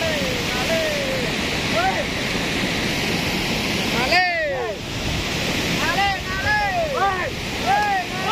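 Cold lahar (volcanic mudflow from Semeru) rushing down the river channel, a loud steady noise of turbulent muddy water, with people's voices over it. About four seconds in the rushing briefly drops.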